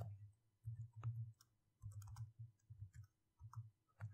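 Faint typing on a computer keyboard: a few keystrokes in short, irregular bursts.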